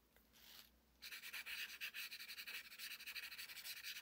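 Faint, rapid rubbing of a fingertip blending chalk pastel into textured watercolour card, starting about a second in.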